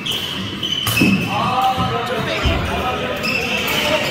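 Badminton doubles rally: a sharp racket hit on the shuttlecock about a second in and a dull thud later, with high squeaks from shoes on the court floor.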